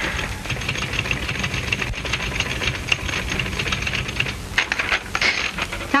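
Manual typewriter being typed on: a rapid, steady clatter of key strikes, with a few louder strokes near the end.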